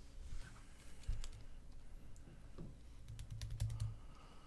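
Faint, irregular clicking of typing on a computer keyboard, with a few soft low thumps, busier near the end.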